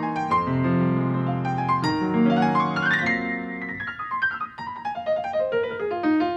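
Solo grand piano playing sustained chords, with a quick upward run of notes about halfway through and a falling run of notes after it.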